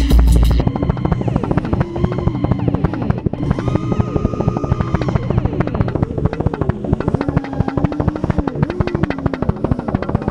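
Loud electronic music with a heavy bass beat cuts off about half a second in. It gives way to the whine of a racing quadcopter's T-Motor F60 Pro brushless motors, its pitch rising and falling with the throttle through the dive and pull-out.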